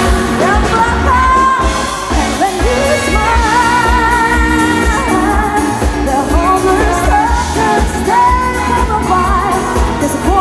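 A female lead singer singing a pop song live with a band, her held notes wavering with vibrato over a steady bass and drum beat.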